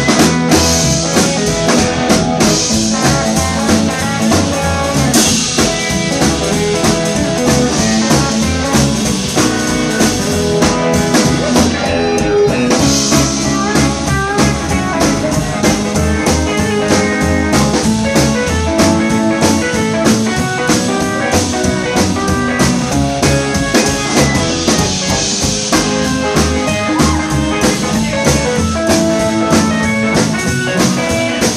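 Rockabilly band playing live in an instrumental stretch: two electric guitars, a solid-body and a hollow-body archtop, over an upright double bass and a drum kit keeping a steady beat with cymbals.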